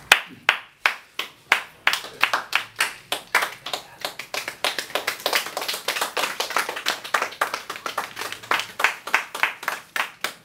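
Applause from a small group of people: many quick, uneven hand claps overlapping, starting abruptly.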